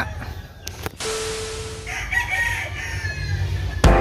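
A rooster crowing, faint and a little way off, about two seconds in. Music cuts in just before the end.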